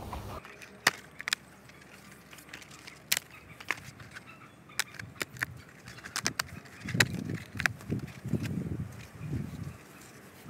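An old piece of dead bark being tapped and broken apart by hand: a series of sharp knocks and cracks, thickening in the second half into a cluster of cracks with rough scraping and rustling of the bark.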